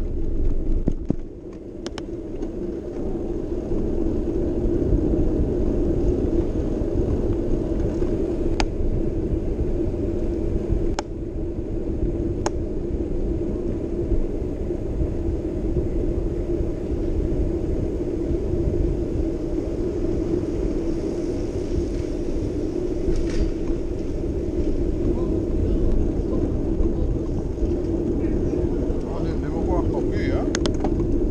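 Steady, muffled rumble of wind and movement noise on a moving camera's microphone, with a few faint clicks.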